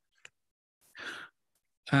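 A short, soft intake of breath about a second in, from a lecturer talking into a headset or laptop microphone, with near silence either side.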